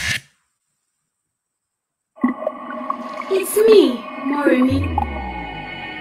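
Animated film trailer soundtrack: the music cuts off into about two seconds of silence, then returns with gliding, swooping tones, a low rumble just before five seconds in, and a steady sustained ambient chord.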